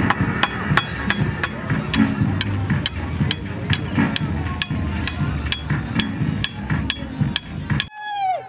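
A machete chopping into the wood of a hand-carved pestle: sharp knocks in a steady rhythm, about three a second.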